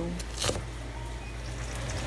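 A single knife chop on a wooden cutting board about half a second in, then a steady low hum.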